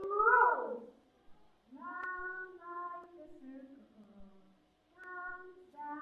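A voice singing unaccompanied in long held notes with short breaks between them. It opens with a loud swoop that slides down in pitch.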